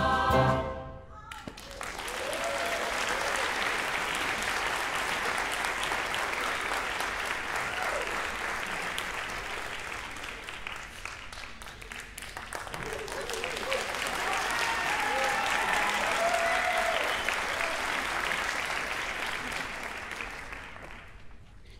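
The last sung chord of a choir with piano cuts off about a second in, and a concert audience breaks into applause. The applause dips briefly partway through, swells again, then begins to fade near the end.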